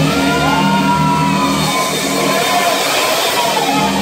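Live electric guitar and electric bass playing together, with a lead line of long notes that bend up and down in pitch.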